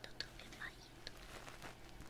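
Fingers rubbing and tapping the ear of an ear-shaped ASMR microphone, close to the mic, in faint scattered clicks and scratches, with soft whispered mouth sounds mixed in.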